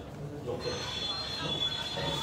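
A high-pitched squeal of a few close, steady tones begins about half a second in and holds, over faint voices in the room.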